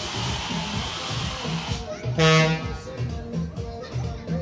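Loud fairground ride music with a steady, repeating bass beat. About two seconds in, a single short horn blast sounds for about half a second and is the loudest thing heard.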